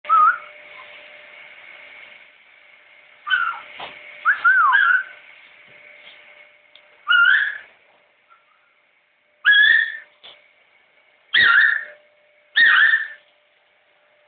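Blue-and-gold macaw whistling: about seven short whistled notes with pauses between, a few of them gliding up and down in pitch, over a faint steady hum.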